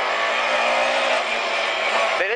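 Rally car engine running hard and held at a steady pitch, heard from inside the cockpit.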